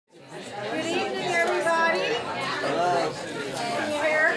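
Indistinct chatter of several people talking at once in a room, with no single clear voice.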